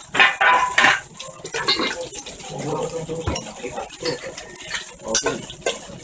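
Kitchen clatter: metal tongs and utensils clinking against steel bowls and cast-iron plates, with a few sharp clinks in the first second, over background voices.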